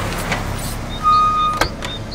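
Cartoon sound effect of a van driving up and pulling to a stop: a rush of vehicle noise fades, a short steady high squeal sounds about a second in, and a sharp knock follows near the end.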